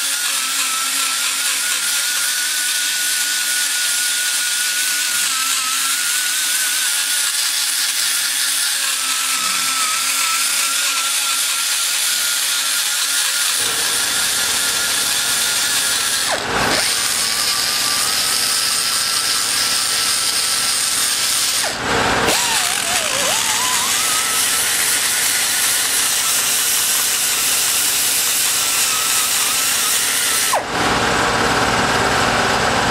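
High-speed die grinder with an abrasive stone, blending the valve seat into the port on a Ford Focus 2.0 aluminium cylinder head. Its steady high whine wavers as the stone is worked in and out. The whine breaks off briefly twice, the second time about 22 seconds in, where it sags sharply in pitch and climbs back.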